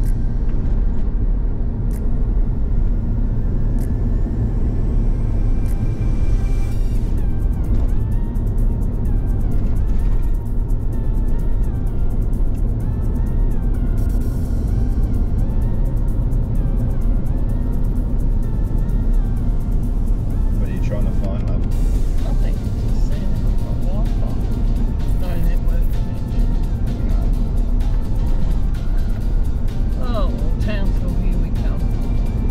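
Steady low road and engine rumble inside a vehicle's cabin driving on a gravel road, with music that includes a singing voice playing over it.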